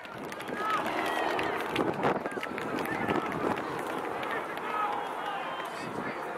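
Distant shouts and calls from rugby players and spectators across an open pitch, heard as short faint voice fragments over a steady outdoor noise, with scattered light knocks.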